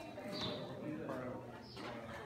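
Indistinct voices of people talking in the background, no words made out.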